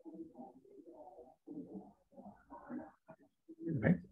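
Faint, low cooing bird calls repeated in short phrases, with a brief louder sound near the end.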